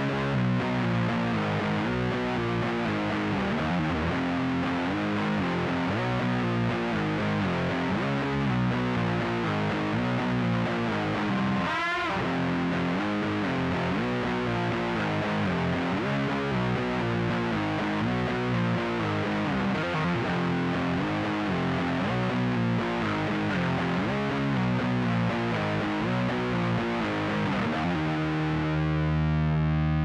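Distorted electric guitar tuned to C standard playing a heavy doom-metal verse riff, the same riff four times with four different endings. About twelve seconds in a note is bent with vibrato, and near the end it settles on a held, ringing chord that is cut off.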